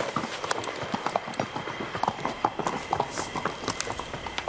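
Footsteps of several people walking quickly on a hard stone floor. They come as a dense, irregular run of sharp overlapping steps.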